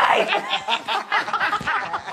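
Human laughter: a quick run of short laughs, about five pulses a second.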